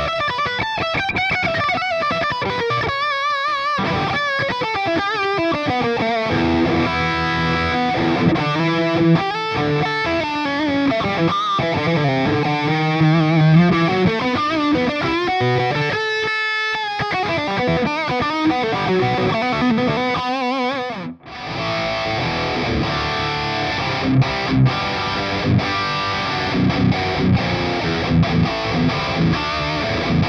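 Electric guitar (a Suhr Classic) played through a Kemper preamp and a Soldano 4x12 cabinet impulse response with English-made Celestion Vintage 30 speakers. For the first two-thirds it plays a lead line with held notes and wide vibrato. After a brief break it turns to lower riffing with sharp, regular accents.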